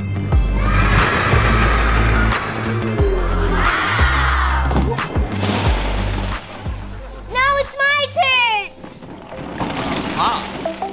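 Background music with a deep, pulsing bass line and wordless voice-like sounds. About seven and a half seconds in the bass drops out and a quick warbling run of rising-and-falling vocal glides, like a whinny, takes over briefly.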